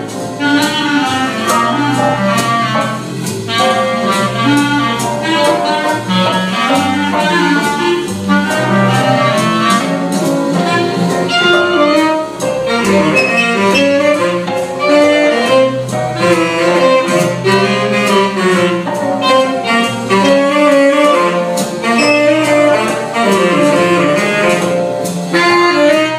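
Two clarinets and a saxophone playing a jazzy ensemble piece together, with one clarinet resting for part of it.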